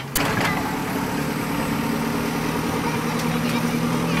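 A JCB backhoe loader's diesel engine running steadily at a constant speed, coming in abruptly just after the start, with a few short knocks early on.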